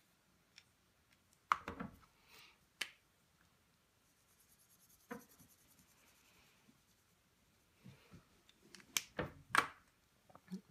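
Light handling sounds of craft tools on a work table: a few sharp clicks and taps, in a cluster between about one and a half and three seconds in, once about five seconds in, and a louder run near the end, with faint rustling between. They come from a marker or water brush and a watercolor card being picked up, tapped and moved.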